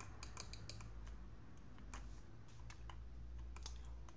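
Faint, irregular clicking of a computer keyboard and mouse, a dozen or so light taps, over a steady low hum.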